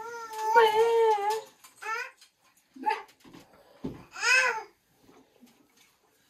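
Infant babbling: a long, high-pitched drawn-out vowel sound over the first second and a half, then several shorter calls, the last rising and falling a little after four seconds in. A short dull thump comes just before that last call.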